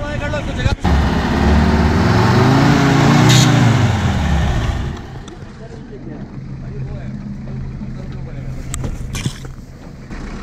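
Off-road vehicle's engine revving up and dropping back over about four seconds. Then it settles to a quieter steady engine hum.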